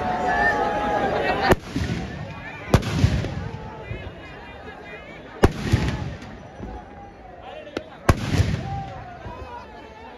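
Firecrackers bursting in a burning Ravana effigy: four loud bangs a few seconds apart, each with a rumbling tail, and a smaller crack, over crowd chatter.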